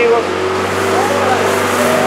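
Police water-cannon truck running: a steady hiss of water spray over the steady drone of its engine and pump.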